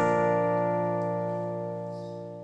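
The final strummed chord of an acoustic guitar ringing on and slowly fading out at the end of a song.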